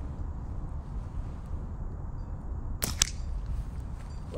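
A slingshot shot: two sharp cracks about a fifth of a second apart near the end, the bands snapping forward on release and then the steel ball striking beside the target. They sound over a steady low background rumble.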